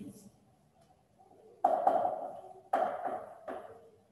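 A marker pen writing on a whiteboard. There are about four sharp strokes in the second half, each starting suddenly and fading quickly.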